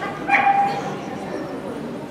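A dog gives one short, high-pitched yelp about a third of a second in.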